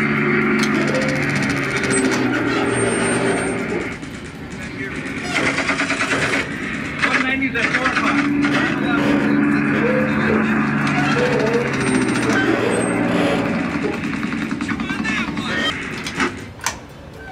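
Soundtrack of a B-17 gunner simulator: a steady drone of aircraft engines, broken by rapid bursts of simulated machine-gun fire, over indistinct voices.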